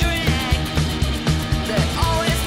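Live rockabilly-punk band playing: upright double bass, drum kit and electric guitar in a steady fast beat.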